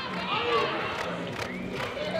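Spectators whooping and cheering, with many rising and falling shouts, loudest about half a second in.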